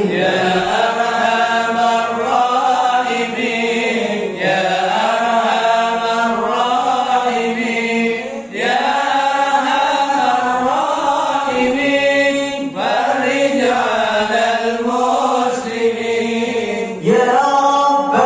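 Group of men chanting an Islamic dhikr together into microphones, in phrases about four seconds long with short breaks between.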